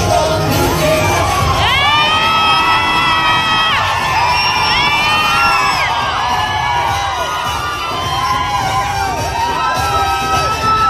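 A crowd of people cheering and shouting, with a few long drawn-out shouts rising above the din in the first half and many short overlapping shouts near the end.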